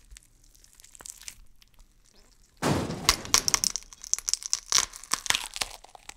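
An iPhone being crushed in a bench vise: after a quiet start with a few faint ticks, its glass screen and metal frame give way about two and a half seconds in, in a loud, rapid run of sharp cracks and crunches that lasts to the end. The phone breaks rather than bending.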